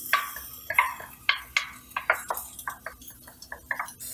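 Small kitchen bowl being emptied into a saucepan, with a utensil scraping and knocking against the bowl and ingredients dropping into the pan: a run of short, irregular clicks and taps.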